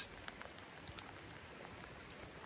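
Faint steady rain, with a few scattered drops ticking.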